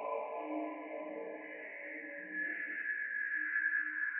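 Electroacoustic live-electronics music made in Csound and Max/MSP: sustained synthetic drones. Low tones swell in and out, and a high, slowly falling tone grows louder from about halfway through.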